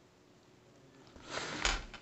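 Handling noise: a brief rustle about a second in, ending in a sharp click, then two faint clicks.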